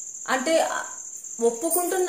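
A woman speaking Telugu in two short phrases, with a brief pause between them, over a steady high-pitched tone.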